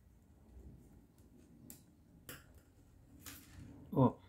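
Faint clicking of wooden knitting needles as stitches are worked: a few soft, separate ticks in the second half.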